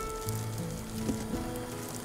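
Background music with sustained held notes over a steady hiss.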